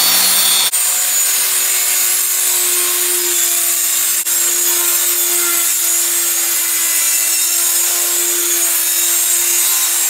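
Bosch handheld marble saw (a small circular saw built for tile and stone, here fitted to cut plywood) running at full speed with a steady high whine. The sound changes abruptly about a second in.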